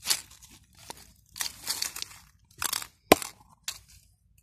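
Rustling and scraping of a backpack's fabric being handled close to the microphone, in several short bursts, with one sharp knock a little after three seconds in.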